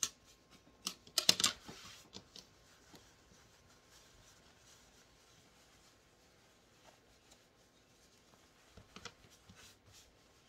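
Hands handling and smoothing a turned cloth pad of flannel and polyurethane laminate on a cutting mat. There is a burst of rustling and knocks about a second in, then faint rubbing, and a few soft taps near the end.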